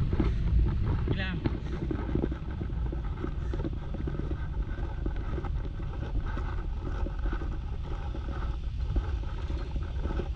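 City street ambience: a steady low rumble of traffic and vehicle engines, with people's voices.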